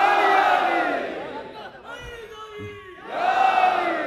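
Large crowd of men shouting a slogan together, twice: a loud swell of many voices at the start that fades after about a second and a half, and a second one about three seconds in.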